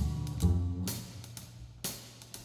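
Live jazz: a double bass plucking low notes, with a few drum-kit strikes, the music thinning out through the second half.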